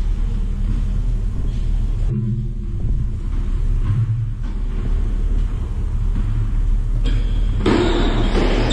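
Steady low rumble of an indoor sports hall's room noise, with a wider hiss swelling in near the end.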